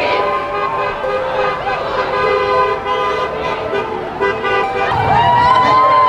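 Car horns honking, long held tones, over the shouting voices of a marching crowd; the voices grow louder about five seconds in.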